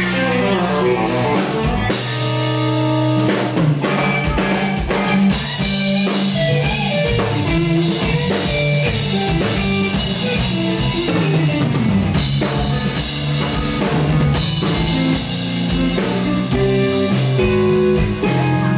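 Live band of electric guitar, electric bass and drum kit playing an instrumental passage with no singing, loud and steady throughout.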